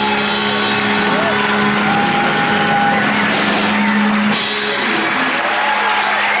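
A live rock band's final chord held and ringing out, stopping about four seconds in, while the audience cheers and whoops over it.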